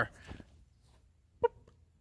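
Near silence, broken by one very short pitched "boop" about one and a half seconds in.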